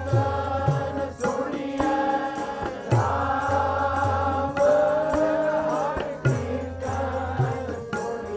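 Sikh Gurbani kirtan: voices singing a shabad line over sustained harmonium chords, with deep tabla strokes whose bass pitch glides.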